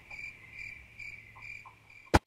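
Crickets chirping, a high chirp repeating about three times a second, the stock sound of dead silence.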